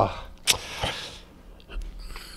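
A man breathing into a close microphone during a pause in talk: a sharp mouth click about half a second in, a short breathy hiss, then a fainter click and low room noise.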